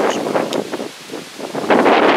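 Gusty wind buffeting the microphone. It eases about a second in and picks up again near the end.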